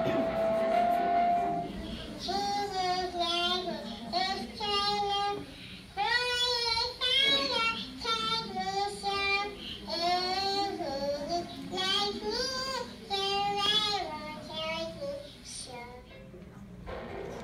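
A high voice singing a slow song in phrases with strong vibrato, after a single held note at the start, played over a hall's loudspeakers with the room's echo.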